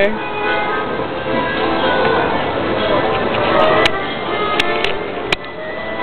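Street accordion playing a tune in held chords and melody notes. A few sharp clicks come through in the second half.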